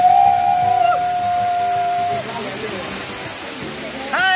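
Waterfall pouring into a pool, a steady rushing noise. Over it, a single long held high note starts just before and stops about two seconds in.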